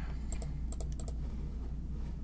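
A run of quick clicks from a computer keyboard and mouse, bunched in the first second or so, over a steady low hum.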